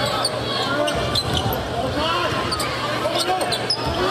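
A basketball dribbled on a hardwood court, with the arena crowd chattering behind it.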